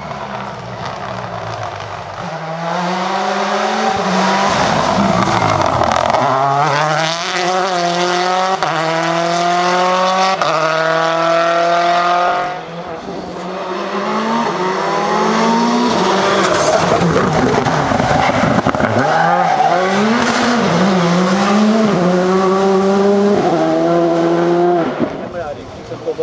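Rally car engines at full throttle as two cars pass one after the other, each accelerating hard through the gears. Engine pitch climbs and drops back at every upshift, with a break about halfway where the second car takes over.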